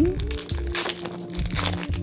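Clear plastic zip-lock bag of paper stickers crinkling and crackling as hands handle and open it, over soft background music.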